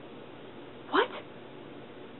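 A single short, rising vocal sound about a second in, over faint steady room hiss.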